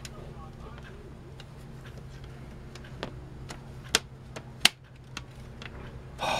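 Sharp plastic clicks and knocks as a plastic PC-case front bezel is pressed and snapped onto its metal chassis, a handful of them from about three seconds in, the sharpest about four and a half seconds in, over a faint steady hum.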